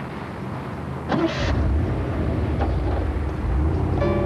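Car engine running steadily as a convertible drives off, coming in low about a second and a half in, just after a brief rush of noise.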